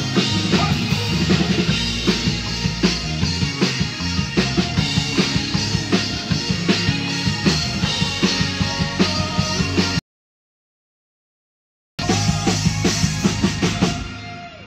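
A live band plays in a rehearsal room, with the drum kit keeping a steady beat under the bass and other instruments. About ten seconds in, the sound cuts out completely for about two seconds, then the band is heard again.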